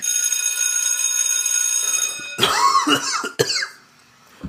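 A steady high ringing tone for about two seconds that cuts off, then a man coughing and spluttering close to the microphone after choking on a sip of water.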